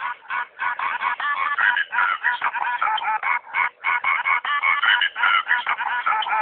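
Loud, distorted playback from a small sound system: rapid nasal honking notes, one close after another.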